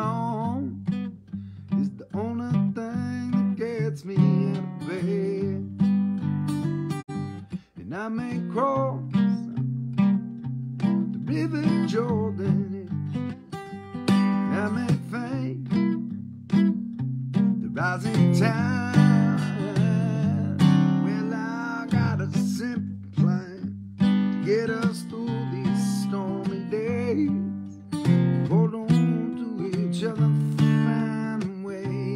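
Acoustic guitar being strummed and picked through a song, with a man's singing voice over it at times.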